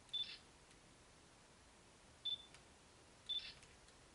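Three short, high-pitched chirps over faint room noise: one at the very start, one about two seconds in and one about three seconds in, each a brief steady tone with a quick click-like burst.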